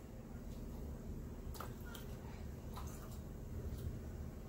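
A few faint, short plastic clicks and taps from a personal blender cup and its white blade base being handled, over a low steady hum; the blender motor is not running.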